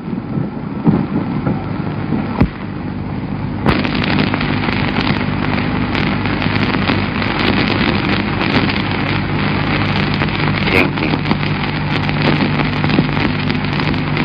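Worn optical film soundtrack: a steady hiss over a low hum, with scattered crackle. The hiss grows louder about four seconds in.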